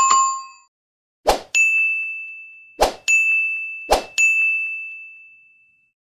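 Subscribe-animation sound effects. A short chime rings at the start and fades within a second. Then three short taps come at about one-second intervals, each followed at once by a bright bell ding that rings on and fades, the last one dying away near the end.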